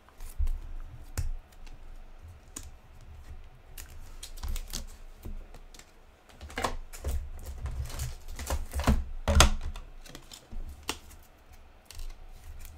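Irregular light clicks, taps and rustles of hands handling a trading card and a rigid plastic top loader on a tabletop, growing busier with a few louder knocks about three-quarters of the way through.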